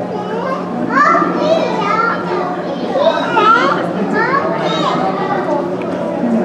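Many children's voices chattering and calling out at once, over a steady low hum.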